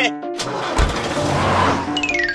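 Cartoon background music with a noisy whoosh sound effect laid over it. The whoosh swells from about half a second in, peaks late, and fades as the picture sweeps to the next shot.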